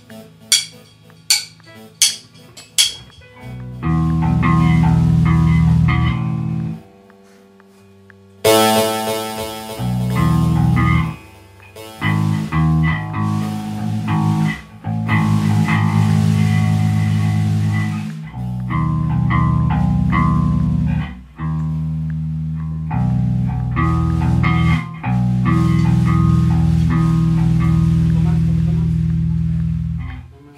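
A rock band plays a song with distorted electric guitar and bass guitar. It opens with four sharp hits about three-quarters of a second apart, then the full band comes in and plays in stop-start sections, with a short break about seven seconds in before it crashes back in.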